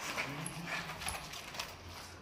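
A man's short, low moan of pain, with light scuffling and shuffling of bodies around it.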